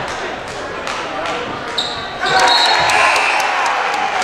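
Basketball bouncing on a hardwood gym floor amid crowd voices. A short high tone sounds about two seconds in, and then the crowd and players' voices grow louder.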